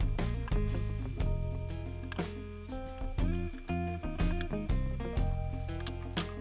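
Background music: a run of plucked notes over a steady bass line.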